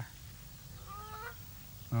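A single faint bird call, about half a second long and rising slightly in pitch, about a second in.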